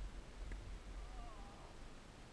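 A tennis ball struck once by a racket, a single sharp click about half a second in, over a low steady rumble. A short, wavering animal call follows in the second half.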